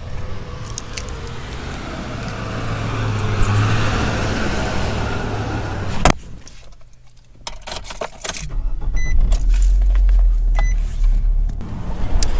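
Keys jangling while someone walks up to a parked car. A sharp click comes about six seconds in, and a steady low rumble follows near the end.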